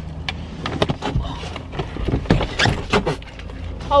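Irregular knocks, bumps and rustling of a bag being shoved into a campervan's overhead storage, over a steady low hum.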